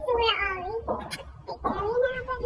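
A person's high voice making meow-like sounds in imitation of a cat: two long calls that slide up and down in pitch.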